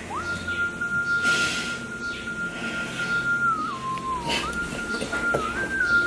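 A slow, mournful whistle-like melody line in the soundtrack music, a single pure high note that slides up at the start, holds long and steps down and back up, with a woman's breathy sobs under it.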